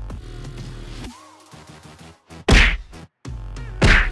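Electronic music that drops out briefly, with two loud whacks about a second and a half apart, the second right at the end, as a giant plush teddy bear is slammed around in a play wrestling match.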